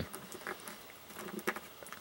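Faint handling noise of a small plastic action figure being held and repositioned by hand, with a few light ticks and taps, two of them about half a second and a second and a half in.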